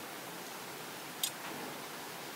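Quiet steady hiss of room tone with a single short, sharp click a little over a second in.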